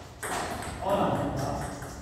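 Table tennis rally ending: a last celluloid ball hit near the start, then people's voices talking in a hall.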